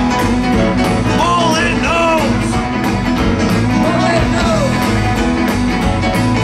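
Live rock band playing: electric guitar and electric bass over drums keeping a steady beat. A melody line slides up and down in pitch, twice in the middle and again near the end.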